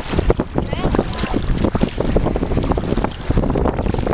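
Wind buffeting the microphone over calm shallow sea water, with faint voices about a second in.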